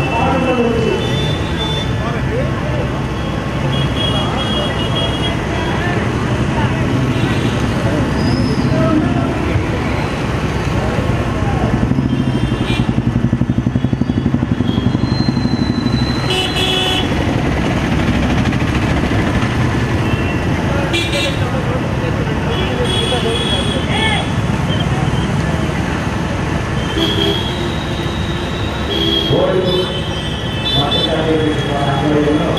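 Busy street crowd noise: many voices mixed with running vehicle engines, cut by several short high horn toots.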